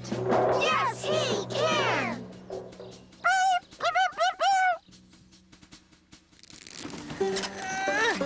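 Sound effects for stop-motion cartoon characters, with music underneath. First come about two seconds of wordless squeaky calls that rise and fall, cat-like meows among them. Then come four short whistled chirps from a cartoon bird.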